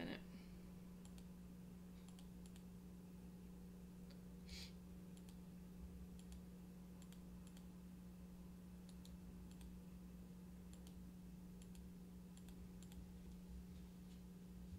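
Near silence over a steady low electrical hum, with scattered faint clicks of a computer mouse, some in quick pairs.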